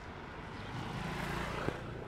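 A motor vehicle passing close by: engine and road noise swell to a peak about a second and a half in, then ease off. A single sharp click sounds near the end.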